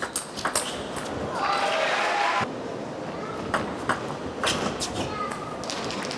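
Table tennis rally: the celluloid-type ball being struck by rubber-covered bats and bouncing on the table, a string of sharp clicks at irregular intervals, with a brief burst of voices from the hall about a second and a half in.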